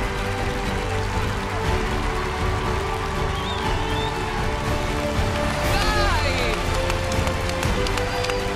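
Music with held chords playing over a cheering crowd, with excited shrieking voices rising and falling about six seconds in.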